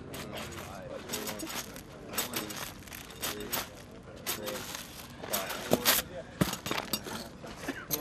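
A group of men talking and calling out over one another, with frequent sharp clicks and clanks from metal ammunition cans being lifted overhead again and again. The loudest knocks come about five to six seconds in.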